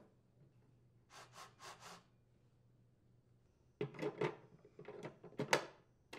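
Faint handling noises from a chainsaw being moved and touched: a few soft rubs about a second in, then a run of light, irregular knocks and scrapes of its plastic housing in the second half.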